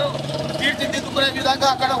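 A man speaking, over a steady low background hum.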